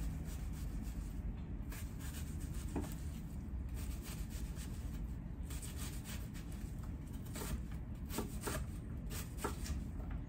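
A chef's knife slicing through an onion on an end-grain wooden cutting board: a series of light cutting strokes, sparse at first and coming quicker and more often in the second half.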